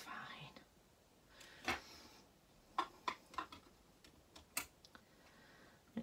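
A few soft, separate clicks and taps as thin metal cutting dies and a clear acrylic cutting plate are handled and pushed into the entrance of a manual die-cutting machine.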